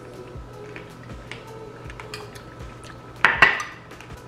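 A metal spoon clinking against a glass bowl of fruit, ice and coconut water, with faint small clicks and then two loud clinks close together about three seconds in.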